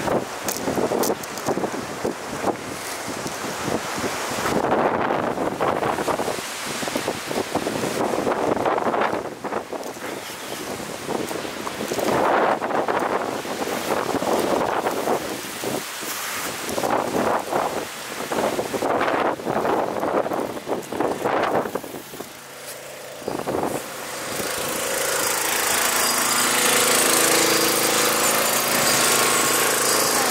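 Bushfire burning through eucalypt bush: an uneven rushing noise with crackles, surging as wind buffets the microphone. About three-quarters of the way through, a small engine starts running steadily under a loud hiss.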